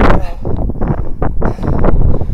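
Wind buffeting the camera's microphone in a steady low rumble, with a man's voice in short bits near the start and again past the middle.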